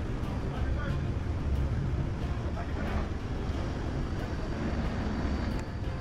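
Low, steady rumble of a large motor yacht's engines as it manoeuvres close alongside, with faint voices.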